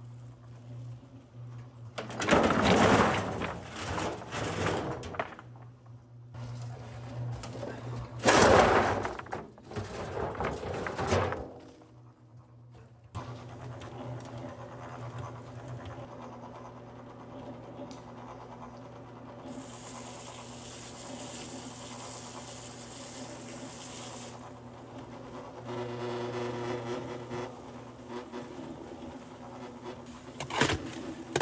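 Small electric cement mixer running with a steady hum as its drum turns, with two loud noisy spells in the first dozen seconds. Past the middle, water from a hose runs into the drum for about five seconds.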